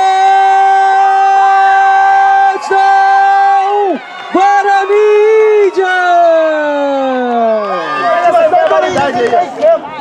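A man's voice holds one long, loud shout for nearly four seconds, holds it again, and lets it fall away in a long downward glide: a sports commentator's drawn-out touchdown call. Quicker excited talk follows near the end.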